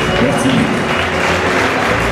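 Audience applauding, with acoustic guitar notes ringing under it.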